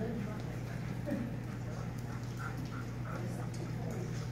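Indoor hall ambience: a steady low hum with faint voices of people in the background and a few light taps.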